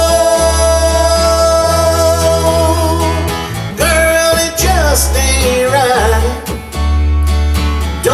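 Country song played live on acoustic guitar and electric bass, with steady bass notes under a man's voice holding a long sung note over the first few seconds, followed by shorter sung phrases.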